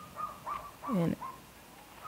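A few short bird calls in the first second.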